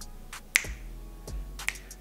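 A few sharp clicks or snaps, the loudest about half a second in and two more later, over faint background music.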